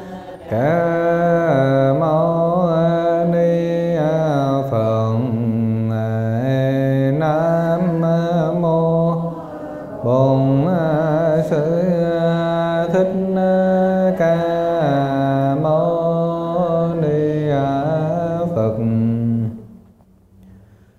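A Buddhist monk's voice chanting a Vietnamese Buddhist invocation in a slow, drawn-out melody, holding each note for a second or more, with a brief break about ten seconds in.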